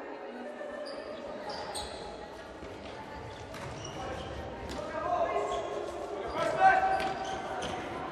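Futsal play in a reverberant sports hall: the ball kicked and bouncing on the wooden court, with players shouting, a loud shout about six and a half seconds in.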